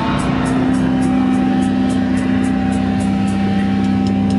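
Live hardcore punk band playing a held distorted electric guitar chord, ringing steadily under a cymbal tapped in an even beat of about four strokes a second.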